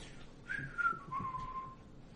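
A person whistling a short falling phrase: a higher note that slides down, then drops to a lower note held for about a second.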